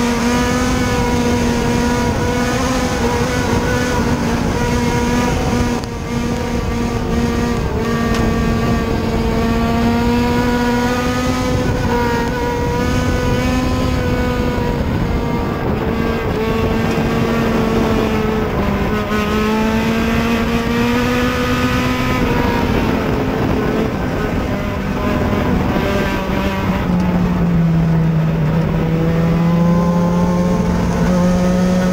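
Mini stock dirt-track race car's engine running hard at racing speed, heard from inside the cockpit. Its pitch sags and climbs again a few times as the throttle is eased and reapplied, and it drops lower near the end.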